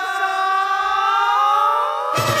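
A sustained sung vocal note, held and sliding slowly upward in pitch, with a second pitch rising and splitting away from it near the end.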